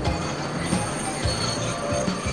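NS 2200-series diesel-electric locomotive hauling coaches past slowly, its wheels squealing in high steady tones over the low running rumble of the train, with occasional low thumps.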